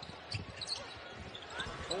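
Court sound of live basketball play in an arena: a few faint knocks of the ball and players' feet on the hardwood floor over a low crowd hum.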